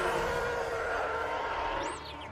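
Sci-fi starfighter engines from a TV space battle: a steady rushing roar with faint drifting tones, and a brief high whistle near the end.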